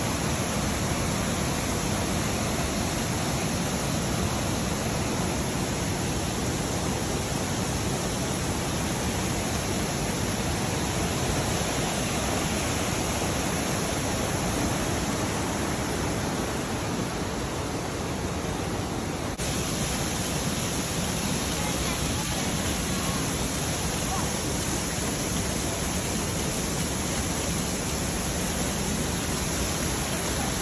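Waterfalls and a rocky mountain stream's rapids rushing in a steady, even wash of water noise, with a slight shift in tone about two-thirds of the way through.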